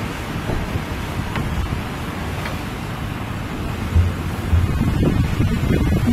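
Wind buffeting the microphone outdoors: a steady low rumbling rush, with a single soft thump about four seconds in.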